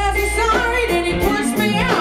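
Female blues vocalist singing live with a full voice, her sung line gliding and bending in pitch, over a band's bass and drums.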